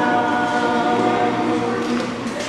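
A woman singing unaccompanied, holding one long steady note.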